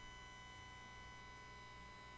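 Near silence: low room tone with a faint steady electrical hum.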